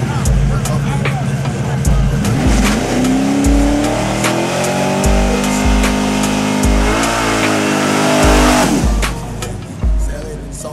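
A muscle car's engine revving hard: it climbs about two and a half seconds in, holds high with one brief dip, then drops away near the end, with its tyres spinning into a smoky burnout. A hip-hop track with a heavy bass beat plays over it throughout.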